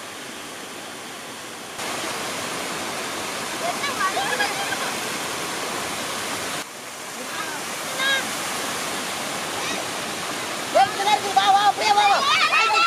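Water pouring over a small weir into a shallow pool: a steady rushing sound that gets louder about two seconds in. Men's voices call out now and then, louder near the end.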